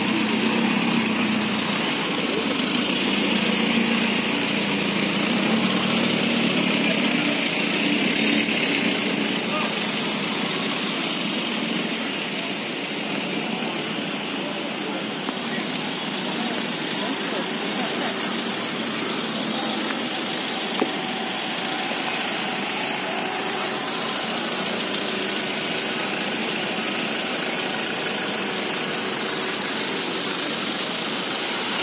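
Road traffic: a line of SUVs and motorcycles driving past with their engines running, a steady mix of engine and tyre noise. There is a short sharp knock about eight seconds in.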